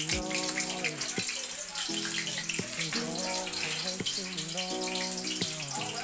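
Hot oil sizzling steadily in a wok as a breaded pork chop morcon roll fries, with a song playing in the background.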